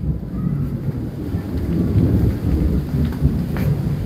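A rainstorm: rain falling with a steady low rumble that runs throughout.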